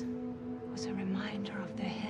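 A woman speaking softly, close to a whisper, over steady held low tones of a film score.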